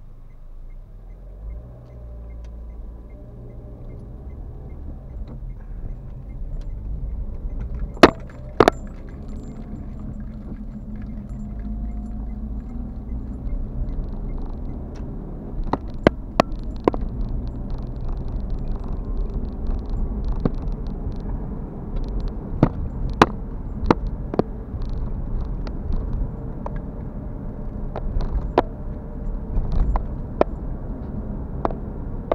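Low engine and tyre rumble of a passenger car, heard inside the cabin, building as the car pulls away from a standstill and drives on. Sharp clicks and knocks come at irregular intervals, the loudest two close together about eight seconds in.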